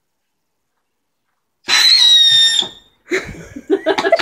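Firework tank letting off a whistle: one loud, high, steady shriek of about a second that starts suddenly and sags slightly in pitch.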